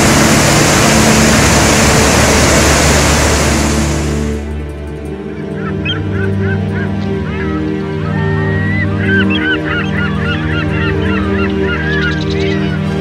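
Loud, even rush of a large waterfall, cutting off suddenly about four and a half seconds in. Then steady sustained music tones with many short bird calls over them, thickening in the last few seconds.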